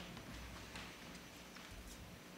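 Faint, irregular footsteps of people walking up a church aisle, a few light heel taps over a low steady hum.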